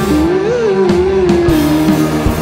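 Rock band playing live: electric guitars, bass, keyboard and drums, with one long held note that rises briefly about half a second in, then falls and holds.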